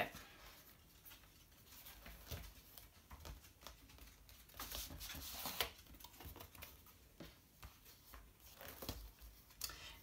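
Faint rustling and light taps of stiff cardstock scrapbook pages being turned and handled, with a few brief louder rustles.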